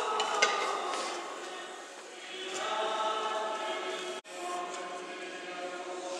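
Orthodox church choir singing slow, held chords, with an abrupt break about four seconds in before the singing resumes.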